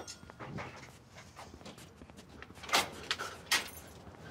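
A front door being unlatched and opened, with two sharp clicks of the handle and lock less than a second apart near the end.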